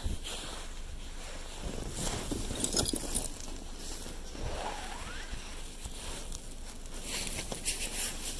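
Snow-covered cardboard being shifted by a gloved hand in a dumpster: soft rustling and crunching, with two brief scraping bursts, about three seconds in and near the end, over a low rumble.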